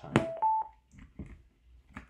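A sharp click from the Bluetooth speaker's aux jack being plugged in, followed at once by two short electronic beeps from the speaker, the second higher than the first.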